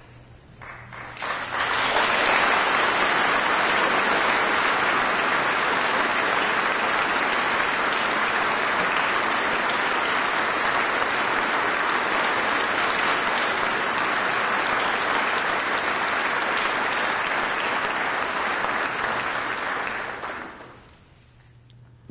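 Audience applauding: the clapping builds quickly about a second in, holds steady, and dies away shortly before the end.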